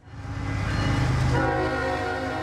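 A diesel freight locomotive rumbles as it passes, and about a second and a half in its air horn sounds, holding a steady chord of several tones.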